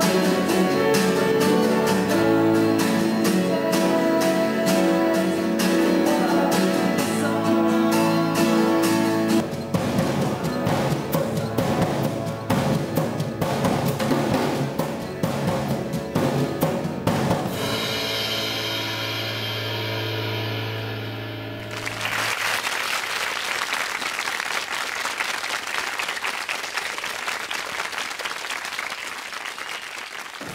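A rock band playing in a recording studio: voice and guitar, then drum kit, ending on a held low note about 22 seconds in. Applause follows to the end.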